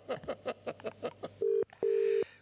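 A man laughing in quick rhythmic pulses, then a telephone ringback tone from a call being placed over a Bluetooth speaker. The tone comes as two short beeps in quick succession, the double-ring pattern, starting about one and a half seconds in.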